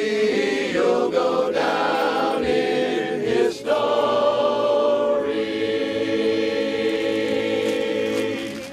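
Barbershop chorus of men singing a cappella in close harmony. The voices move through a few sung syllables, then hold one long chord from about four seconds in, ending the song.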